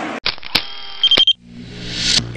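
Stadium crowd noise cuts off abruptly, and a logo sting's sound effects take over. First a bright shimmering effect with a couple of sharp clicks and a brief beeping tone about a second in, then a deep hum and a swelling whoosh near the end.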